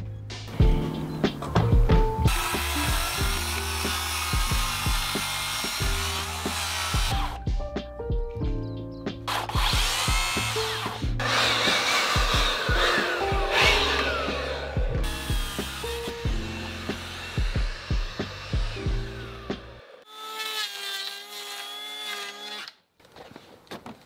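Background music with a steady beat, over which a circular saw cuts through timber in several long passes.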